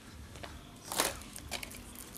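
Faint handling noise of a plastic Blu-ray case being taken off a low shop shelf, with a few light clicks and one sharper click about a second in, over a low steady room hum.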